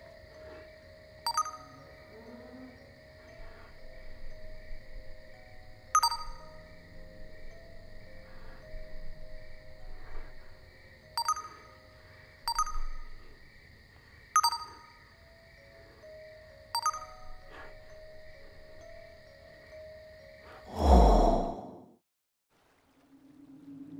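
Phone text-message sound effects: about six short, bright pings spread through, as chat messages pop up, over a steady high ambient drone. Near the end a loud swelling whoosh with a deep boom, the loudest sound, rises and dies away as the picture cuts to black.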